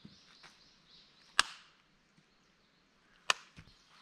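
Two sharp hand slaps about two seconds apart, swatting at biting insects.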